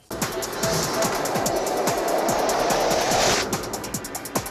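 Electronic music jingle for a TV segment, with a fast, even techno beat. A swelling whoosh builds under the beat and cuts off about three and a half seconds in, and the beat carries on.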